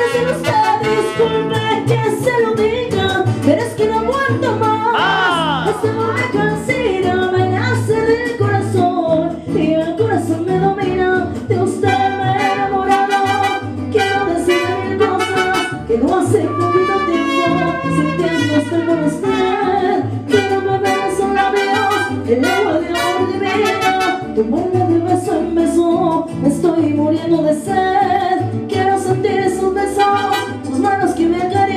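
Live mariachi music: a woman sings a song into a microphone over trumpets and guitars, with a bass line stepping underneath.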